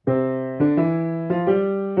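Steinway & Sons grand piano played at a slow, even pace, starting a simple exercise. A new note or chord is struck roughly every two-thirds of a second, each ringing on and fading until the next.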